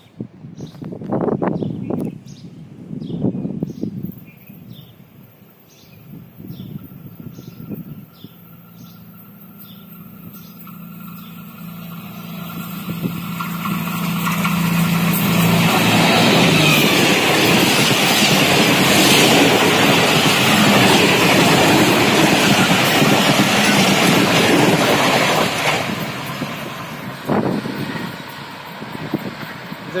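Express passenger train passing at speed behind a ZCU-30 diesel-electric locomotive. The locomotive's engine drone grows over several seconds as it approaches and drops away as it passes about halfway through. Then a long, loud rush of wheels and coaches on the rails lasts about ten seconds and fades near the end.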